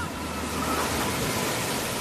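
A steady, even rushing noise, with no music.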